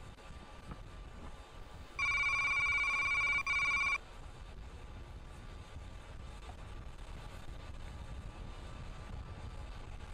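A loud electronic beep tone lasting about two seconds, with a short break shortly before it stops, over a steady low rumble and hiss.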